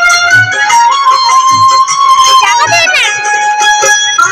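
Recorded dance music with a held melody line over a steady beat, and a quick rising run of notes about three seconds in.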